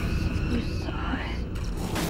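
A hissing, whispered voice, eerie and without clear words, over a low rumble.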